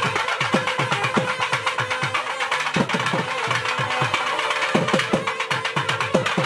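Devotional temple music: rapid drum strokes, each dropping in pitch after it is struck, over a steady held note.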